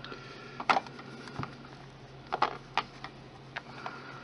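Handling noise from a polymer clay sculpture on a stone base: about five light knocks and clicks, scattered, as it is moved about and set down on a desk.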